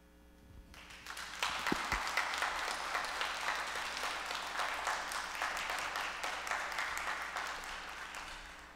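A congregation applauding: the clapping starts about a second in, holds steady and tapers off near the end.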